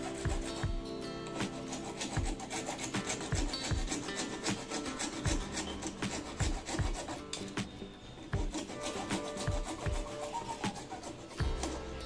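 A hand-held saw blade scraping and cutting at a plastic pipe fitting in quick, irregular strokes, with background music faintly underneath.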